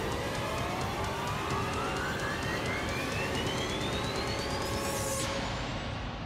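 Electronic riser in an advertisement's soundtrack: one tone climbs steadily from low to very high over several seconds under a dense noisy wash with a fast ticking pulse. The wash cuts off suddenly about five seconds in.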